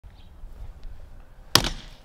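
A hatchet splitting a firewood log on a chopping block: one sharp chop about one and a half seconds in, with a short ring-out.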